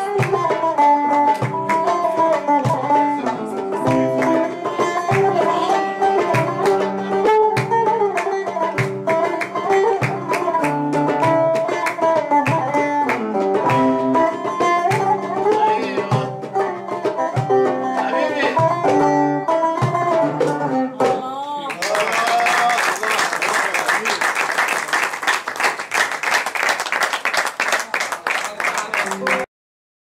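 Solo buzuq playing a fast melody of plucked notes. About 21 seconds in it closes with a sliding flourish, and a dense, unpitched stretch like audience applause follows until the sound cuts off abruptly near the end.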